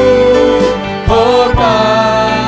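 A live contemporary worship band of keyboard, drums and guitar playing, with singers holding long, wavering notes. Two drum hits come a little past the middle.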